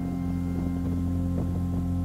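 Motorboat engine running at a steady cruising speed, a constant drone, with a few light knocks over it.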